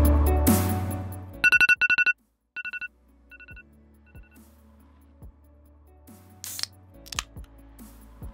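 Smartphone alarm beeping: a quick burst of high, bright beeps about a second and a half in, then the same beeps repeating fainter and fainter like a fading echo until about four and a half seconds in. A few faint clicks and a short rush of noise follow near the end.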